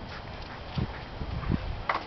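Two dull low thumps of footsteps and camera handling as the camera is carried through the garden, with a short higher-pitched sound near the end.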